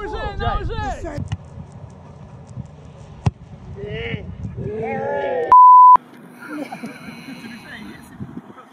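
A loud, steady, single-pitched censor bleep about half a second long, a little past the middle, replacing a spoken word; the voices run right up to it. Earlier there is one sharp knock.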